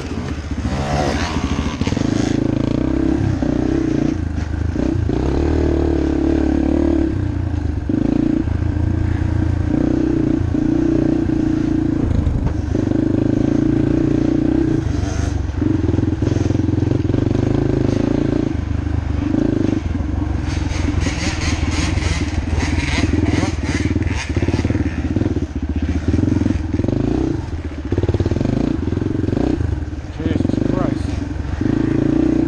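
Yamaha TT-R230's four-stroke single-cylinder engine running under load, its pitch and level changing every second or two as the throttle opens and closes. A run of rattling clatter comes in about twenty seconds in and lasts several seconds.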